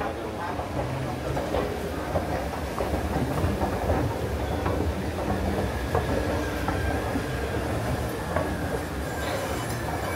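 Shopping-mall escalator running underfoot while it is ridden: a steady low mechanical rumble.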